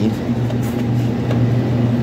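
Coffee machine running with a steady low hum while it brews into a cup.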